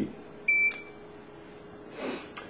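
A short, high electronic beep about half a second in from the beeper of a Weldon seat belt indicator on a VDR demo box. It is one of a series of beeps about a second apart, the warning that a seat is occupied with its belt unbuckled while the park brake is released.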